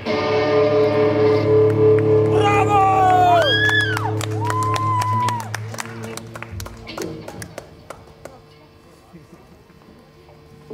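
An electric rock band's closing chord rings out for about five seconds, with a few high gliding notes over it, then stops. Scattered clapping and cheering from the audience follow.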